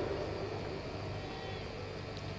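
A pause between sentences of a speech over a microphone: only low, even background noise, with a faint thin tone about a second and a half in.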